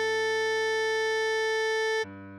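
Synthesized alto saxophone playing the melody, holding one long steady note (written F#5) over a low sustained backing tone. The note stops right at the end.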